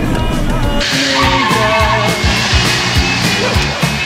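A car pulling away hard with its tires squealing, starting about a second in, over background music.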